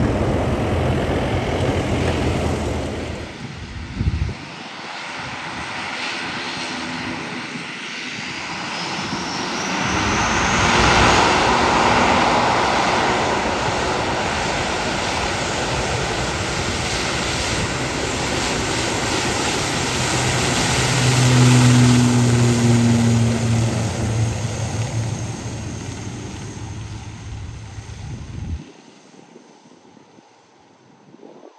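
ATR 72-500 turboprop airliner with its Pratt & Whitney PW127 engines running on the runway: a steady propeller and engine drone. It grows louder as the plane comes close, with a humming pitch strongest about twenty seconds in, then fades as it rolls away and cuts off shortly before the end.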